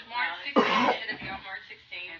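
A woman's voice with a short, loud cough about half a second in, among brief snatches of speech.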